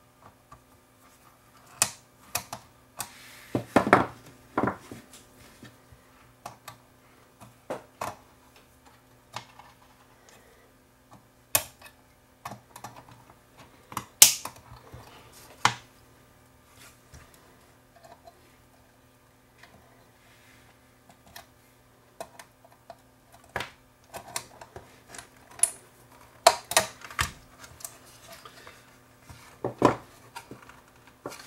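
Irregular sharp clicks, snips and knocks of hand work at a repair bench: side cutters clipping the pins of a broken switch, and tools and parts tapping on the amplifier's metal plate. The loudest snaps come a few seconds in, near the middle and near the end.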